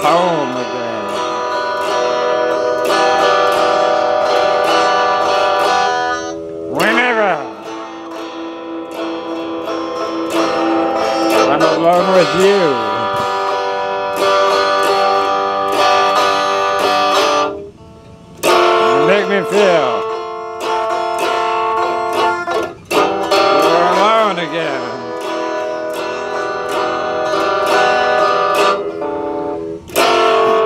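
Electric guitar playing sustained, ringing chords, broken by several swooping pitch glides that rise and fall.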